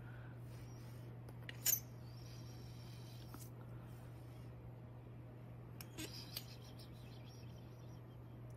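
A few faint clicks and taps of a thin metal blade against a hard work surface as small clay letters are lifted and set down. The sharpest click comes a little under two seconds in, and a few lighter ones come about six seconds in, over a low steady hum.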